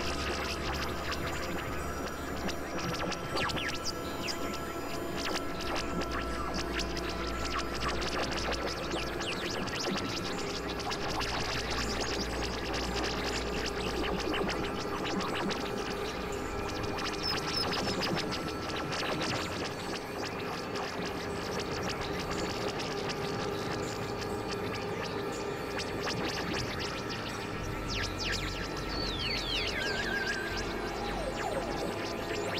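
Experimental electronic synthesizer music: layered held drones over a low bass tone that changes pitch every few seconds, with a constant scratchy crackle on top.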